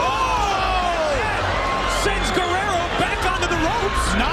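Boxing arena crowd shouting, many voices overlapping, with one long falling shout in the first second.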